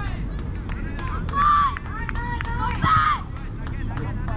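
High-pitched shouts across a youth football pitch, with two loud calls about one and a half and three seconds in, over a steady low rumble and scattered faint knocks.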